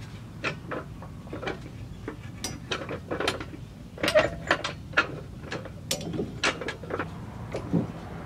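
An irregular run of metallic clicks and knocks, about two or three a second, from a Honda Civic's unbolted rear trailing arm and hub assembly being handled and lowered.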